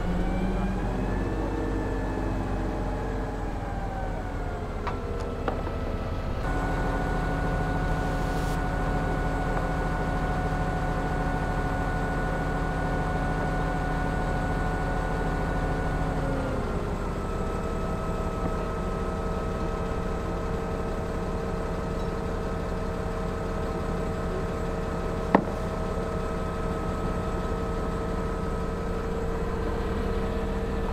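Mobile crane's diesel engine running while the crane lowers a wooden mast. Its pitch rises and falls in the first few seconds, steps up about six seconds in, holds steady, and drops back to a lower steady pitch after about sixteen seconds. There is one sharp click near the end.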